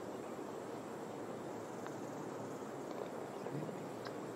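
Steady, faint outdoor background hiss of an open golf course, with a single faint click about two seconds in.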